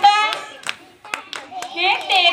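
Hand clapping in giddha, the Punjabi folk dance: several separate claps in a gap between sung lines. A girl's singing voice trails off at the start and a new line begins near the end.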